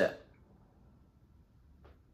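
A single faint, brief sip of whisky from a nosing glass near the end, in an otherwise quiet room.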